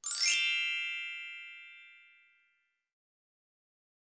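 A single bright chime sound effect: a quick upward shimmer into ringing tones that fade away over about two seconds.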